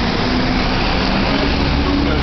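Street traffic noise: a steady wash of road noise with a low engine hum from passing vehicles.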